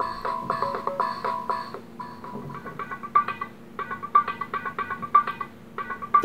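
Short repeating music loops with a plucked, guitar-like riff, each one triggered when an RFID-tagged minifigure sits on a sensor dot under the stage. The pattern changes about two seconds in, then settles into a new loop of repeating notes as the figures are moved to different dots.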